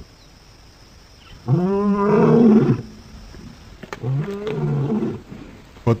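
A lion calling twice: a loud call that rises and falls in pitch about a second and a half in, then a shorter, weaker one about four seconds in.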